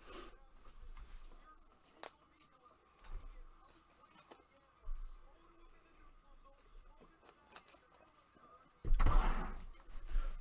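Quiet room tone with a few faint clicks and knocks, then a loud, short rush of noise about nine seconds in.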